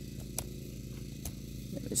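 Electric lawn mower motor running with a steady low hum, with a few faint ticks.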